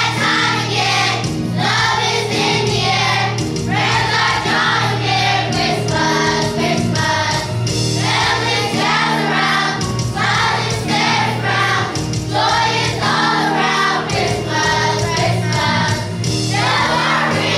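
Children's choir singing in unison over instrumental accompaniment with steady held bass notes.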